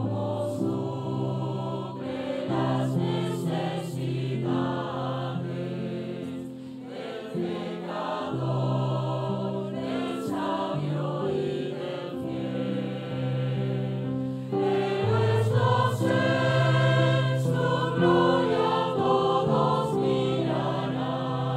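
Mixed choir of men's and women's voices singing a sustained hymn in parts, growing louder about three-quarters of the way through.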